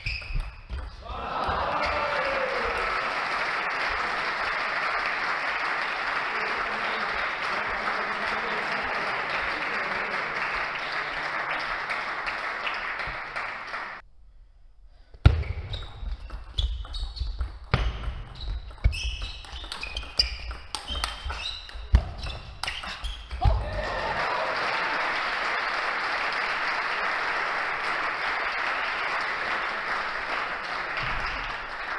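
Applause with some shouting for about the first half, after a point is won. After a short break, a table tennis rally: the plastic ball is struck by the bats and bounces on the table in a string of sharp clicks, several a second. Applause follows again near the end.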